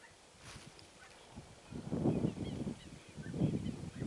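Wind buffeting the microphone in irregular low rumbling gusts from about two seconds in, with a few faint, high bird chirps.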